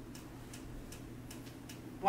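Faint, steady ticking, about two to three light ticks a second, over a low steady hum of room tone.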